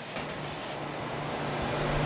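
Steady whir and hum of a pre-warmed cabinet food dehydrator's circulating fans running.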